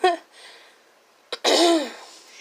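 A woman's short, breathy laugh about a second and a half in, after a brief sound at the very start.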